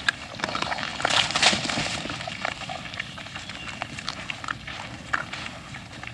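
Wild boar herd feeding: a dense run of sharp clicks and crunches from rooting, chewing and trampling. A louder, noisy scuffle comes about a second in and lasts about half a second.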